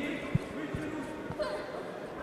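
Three dull low thuds in the boxing ring, the first, about a third of a second in, the loudest, under voices calling out in the hall.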